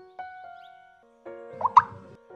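Soft background music of slow, held single notes. Near the end, a short rising plop-like sound effect, the loudest moment.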